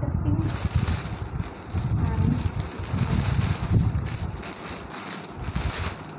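Rustling and rubbing noise close to the microphone, in irregular low bursts with a steady hiss over them.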